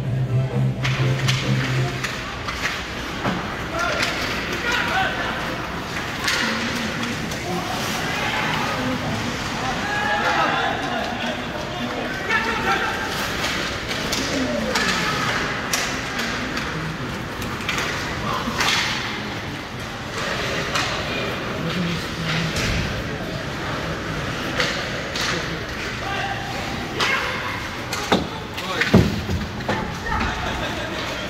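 Ice hockey play heard from rinkside: skates scraping the ice and sharp knocks of sticks and puck against the boards, with players and spectators calling out. A low steady tone sounds for the first two seconds, and a burst of louder knocks comes near the end.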